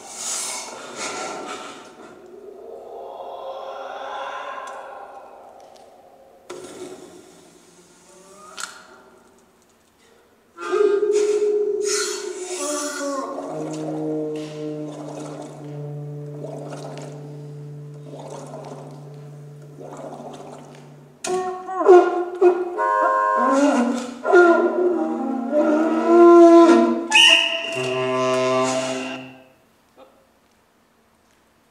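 Playback of an experimental piece for saxophone, percussion and effects pedals: a breathy swell of noise, a brief lull, then layered sustained tones over a low held drone, building to a denser, louder stretch of shifting tones and clicks that cuts off abruptly at the end.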